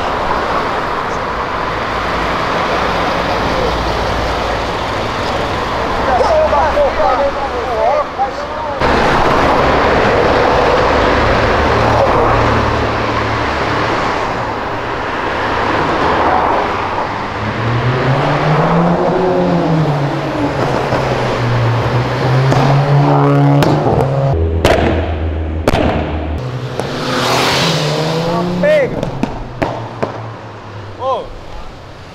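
Car engines on a busy street as cars drive past and accelerate, the engine pitch rising and falling several times over steady traffic noise. The sound changes abruptly about 9 and 25 seconds in.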